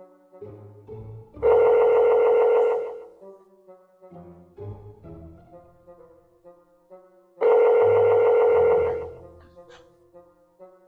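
Telephone ringback tone heard through a smartphone's speaker: two warbling rings, each about a second and a half long, about six seconds apart, while the call goes unanswered. Faint music plays underneath.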